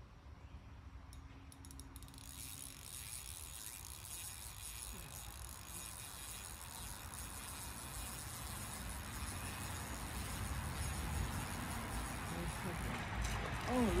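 Spinning reel being cranked as a hooked bass is reeled in: a steady whirr that starts about two seconds in and grows louder.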